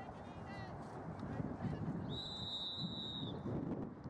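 A referee's whistle blown once in a long, steady blast about two seconds in, lasting just over a second. Geese honk briefly at the very start.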